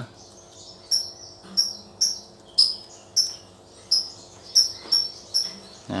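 A small bird chirping repeatedly: about ten short, high, slightly falling notes, roughly two a second, over a faint steady hum.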